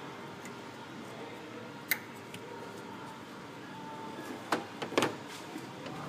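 A plastic electrical connector being pushed onto a car's A/C cycling switch: one sharp click about two seconds in, then a few lighter knocks of handling near the end, over a steady low background hum.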